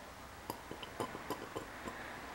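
Faint, irregular light clicks and ticks, about a dozen over a second and a half, from a glass pipette and test tube being handled while liquid is dispensed into the tube.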